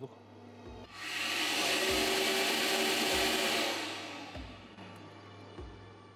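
Compressed-air drive of a turbocharger balancing stand spinning a turbo cartridge up to high speed for a check run after its imbalance correction. A rush of air and turbine noise swells about a second in, holds for a few seconds, then fades away.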